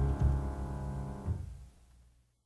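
The last held chord of a song's orchestral accompaniment dies away, fading to silence about a second and a half in.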